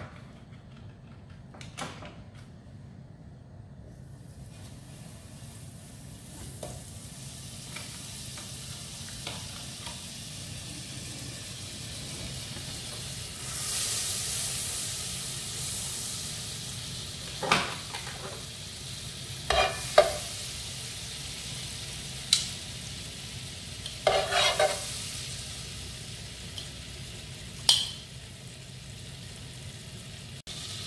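Butter melting and sizzling in a hot nonstick frying pan, the sizzle building as the pan heats and the butter foams. In the second half, a spatula pushing the butter around scrapes and taps against the pan five or six times.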